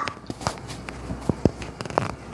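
Several short knocks and clicks at irregular intervals, the last few bunched near the end.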